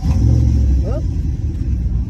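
A truck's engine starting up close by with a sudden loud low rumble, strongest in the first half second, then running on as the vehicle gets ready to pull away; heard from inside a parked car.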